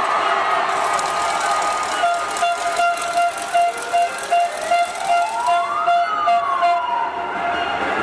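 A siren-like electronic tone pulsing about twice a second, joined midway by a second tone that rises and then falls back, over the murmur of an arena crowd.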